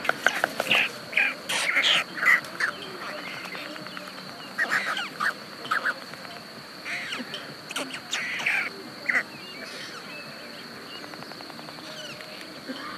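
White storks at the nest making short, harsh calls and rapid clattering in irregular bursts for most of the first nine seconds, then going quiet.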